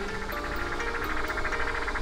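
Electronic sound effect from a boxing punch-machine as its score counts up: a steady tone under a fast, even run of short beeps.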